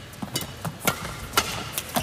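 Badminton rackets striking a shuttlecock in a fast rally: a run of sharp, crisp hits about every half second.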